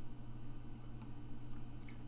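Quiet room tone with a steady low electrical hum and a couple of faint clicks.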